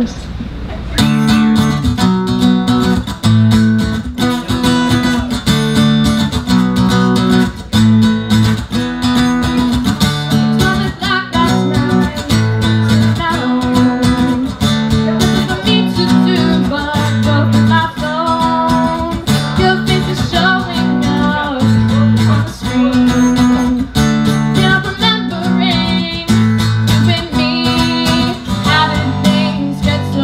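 Acoustic guitar strumming a repeating chord pattern, starting about a second in, with a woman singing over it.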